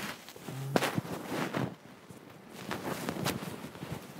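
Scattered rustles and clicks of people moving about on upholstered couches, with a short low hum about half a second in.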